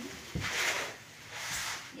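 Plastic bubble wrap around a suitcase rustling in two short bursts, each with a dull bump, as the wrapped case is handled and lifted between its foam packing blocks.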